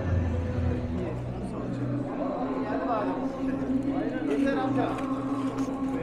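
Background voices of people talking in a busy exhibition hall, over a steady low hum.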